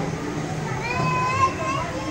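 Children's voices: a child calls out in a high, drawn-out voice about a second in, over the chatter of other children.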